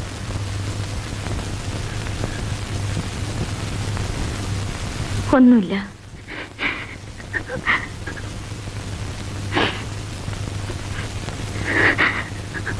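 Steady rain over a low hum, cut off abruptly a little under halfway through. A woman's falling, wailing cry follows, then scattered short sobs and breaths.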